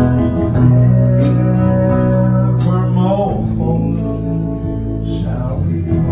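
Live band playing an instrumental passage between sung lines: electric and acoustic guitars over bass and drums, with cymbal hits. A guitar note slides or bends in pitch about three seconds in and again near the end.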